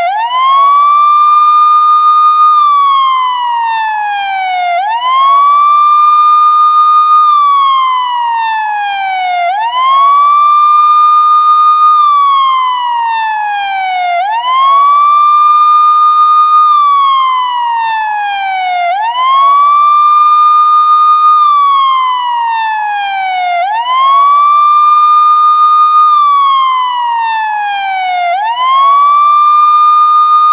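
A loud siren wailing in a repeating cycle: each time the pitch rises quickly, holds for about two seconds, then slides slowly down, starting over roughly every four and a half seconds.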